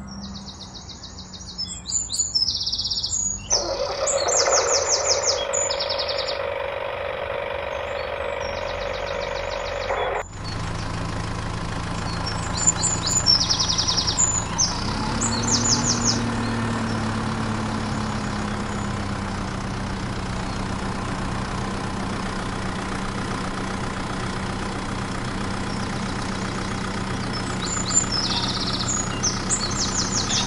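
Birds chirping in short repeated bursts over a steady background hum, which changes abruptly twice in the first ten seconds.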